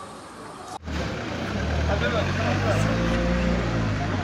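A low, steady engine-like hum that starts abruptly about a second in, with people talking over it.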